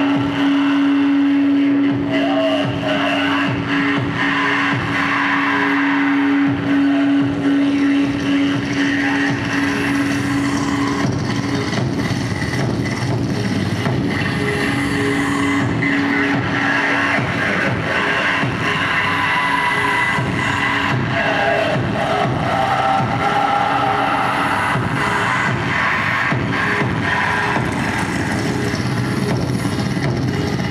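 Live harsh-noise performance: loud, dense, distorted electronic noise from a chain of effects pedals and a mixer, with a voice shouted into a microphone and fed through the effects. A steady low drone tone sits under the noise for the first dozen seconds or so, then fades.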